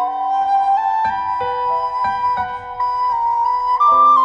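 Recorder playing a slow melody of long held notes over piano accompaniment.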